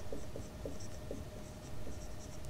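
Marker pen writing on a whiteboard: a string of short, faint squeaks and scratches as the letters are drawn.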